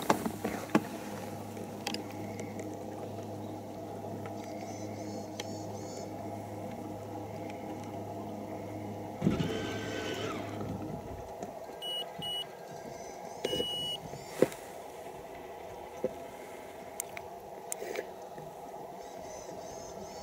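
Steady electric hum with a low drone that drops out about halfway through. A few short high electronic beeps follow, around the point the low drone stops, with scattered light clicks.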